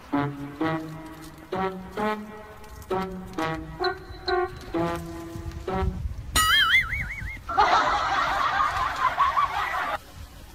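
Comic background music: a bouncy brass-like tune of short stepped notes, about two a second. About six seconds in it gives way to a warbling, wobbling cartoon-style sound effect, then a busy, noisy passage that cuts off suddenly at the end.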